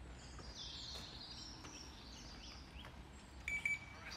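Birds chirping and singing over a low outdoor background hum, with a louder, short, high call near the end.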